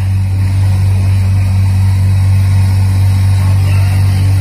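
Packing machinery running with a loud, steady low electric hum that does not change.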